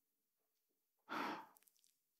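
A woman's short, audible breath or sigh into a close microphone about a second in, during a hesitant pause mid-sentence; the rest is near silence.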